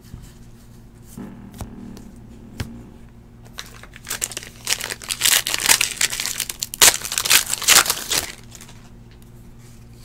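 The foil wrapper of a 2018 Score football card pack being torn open and crinkled by hand, starting about four seconds in and lasting about four seconds. Before it, a few faint clicks as a stack of cards is handled.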